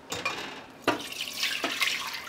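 Warm beef broth being poured from a large stainless steel pot through a fine-mesh strainer into a pot below, liquid splashing steadily, with a louder splash about a second in.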